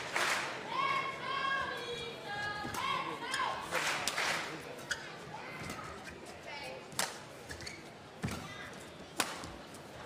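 A badminton rally with sharp racket strikes on the shuttlecock, the clearest about seven seconds in and just after nine, and short squeaks of shoes on the court floor in the first few seconds. The sounds echo in a large hall.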